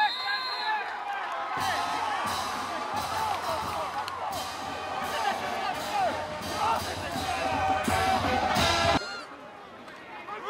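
Shouting and cheering voices, with music that has a steady drum beat and deep bass coming in about a second and a half in and cutting off suddenly near the end.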